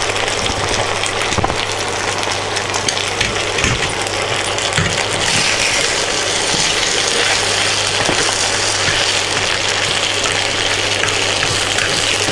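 Macaroni with onions and tomato sauce frying in a steel pan, a steady sizzle that grows louder about five seconds in. A spoon scrapes and clinks against the pan as the pasta is stirred.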